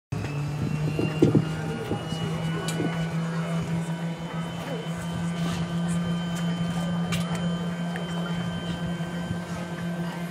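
A steady mechanical hum holding one constant low pitch throughout, with people talking over it.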